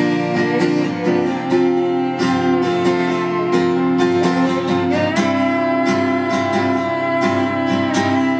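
Steel-string acoustic guitar strummed in a steady rhythm, about three strokes a second, with chords that change around the middle. A voice sings along at times.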